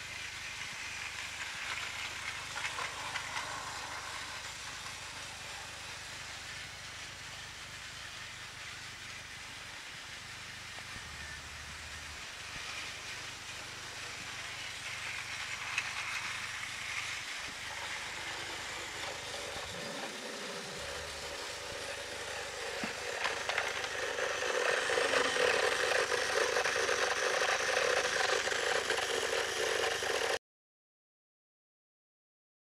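Battery-powered Tomy Plarail toy train running on plastic track: a steady motor whir with the rattle of its wheels and carriages, getting louder in the last few seconds.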